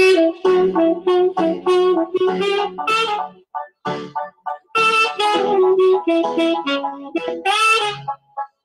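Saxophone playing a melody in phrases of held and quick notes, with a short break about three and a half seconds in.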